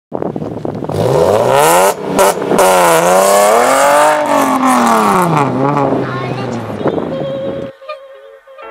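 Nissan 370Z's 3.7-litre V6 revving hard while drifting. Its pitch climbs steeply about a second in, holds and wavers high, then falls away, over a wide hiss of tyre noise, and it cuts off suddenly just before the end.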